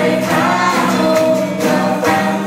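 Live Christian praise and worship song: many voices singing together with an amplified band, loud and steady.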